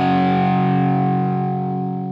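Outro music: a single distorted electric guitar chord left ringing, its brightness dying away first as it slowly fades out.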